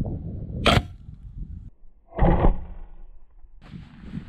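Crossbow fired: a single sharp crack of the string releasing the bolt about a second in. About a second and a half later comes a second, duller knock.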